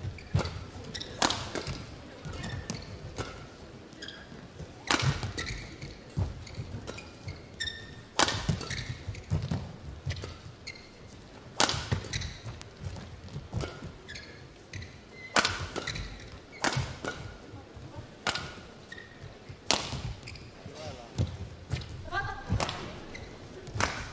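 Badminton rackets hitting a shuttlecock back and forth in a long rally: a sharp smack about once a second, some twenty hits in all.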